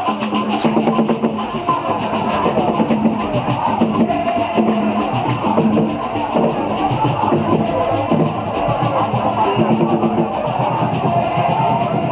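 Drums beating steadily with a crowd of voices singing and calling over them.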